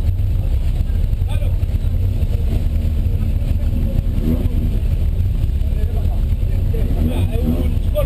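Engine of a 1979 VW Golf GTI race car idling, a steady low rumble heard from inside the cabin, with people talking faintly nearby.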